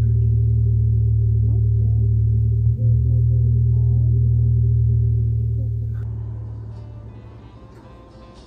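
Loud, steady, low ominous drone from the film's horror soundtrack, which fades away over the last couple of seconds.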